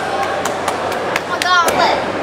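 A run of sharp, evenly paced clicks, about four a second, with a brief high-pitched yelp that bends downward about a second and a half in.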